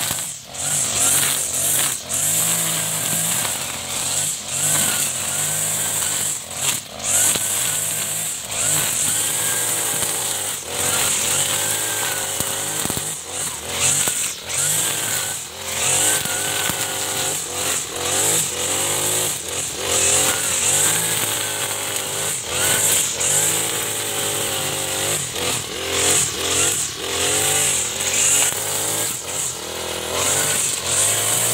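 iPower ABC435 brush cutter's small engine running at high revs as its cutting head mows through wilted grass. Its pitch keeps rising and falling as the throttle is worked under load, with a few brief dips in the first seven seconds when the throttle is let off.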